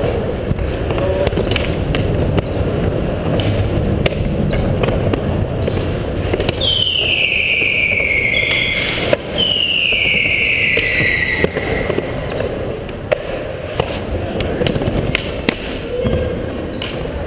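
Skateboard wheels rolling on a mini ramp with occasional clacks of the board, over a steady low rumble. About halfway through come two long whistles, one after the other, each falling in pitch over roughly two seconds.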